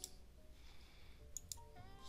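Near silence with a faint hum, broken by two quick computer mouse clicks close together about a second and a half in.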